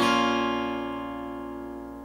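Acoustic guitar A minor chord, fretted with a capo at the first fret, ringing out after a single strum and slowly fading away.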